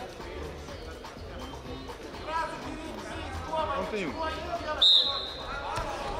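Referee's whistle blown once, a single held high blast about five seconds in, signalling the wrestlers to resume. Shouting voices echo in a large hall.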